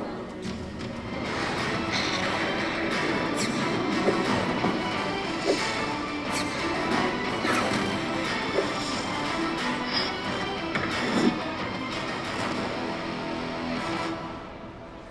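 Action-trailer music with crash and impact sound effects from a promotional toy-animation video, played over a display's loudspeakers and picked up in the room. Several sharp hits stand out over the steady music.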